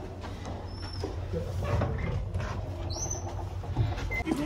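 Footsteps and shuffling of people walking along a corridor over a low steady hum, with two brief high squeaks.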